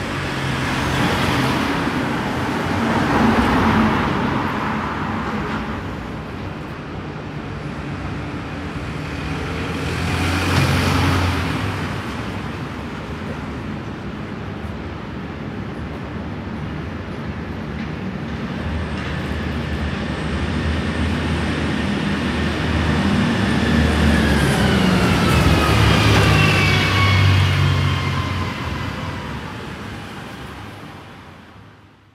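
Surround field recording of road traffic: vehicles passing one after another, their noise swelling and fading. In the last pass near the end, the tone falls in pitch as the vehicle goes by.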